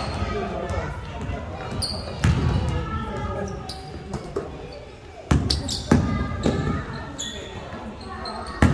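Basketball bouncing on an indoor court, with hard, echoing thuds about two, five and six seconds in, and players' voices calling across the hall.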